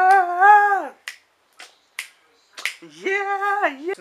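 A man vocalizing a long drawn-out, wavering note that falls away about a second in, followed by four sharp clicks spread over the next two seconds, then a shorter vocal note near the end.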